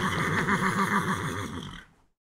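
Zebra calls: a fast, even run of repeated barking brays, fading out near the end.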